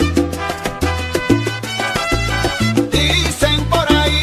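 Salsa music from a DJ mix, an instrumental stretch with a bass line that changes note every half second or so under percussion and sustained pitched notes, with no singing.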